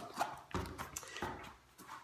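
A few faint knocks and handling noises from a person moving close to a camera set on the floor, with quiet gaps between them.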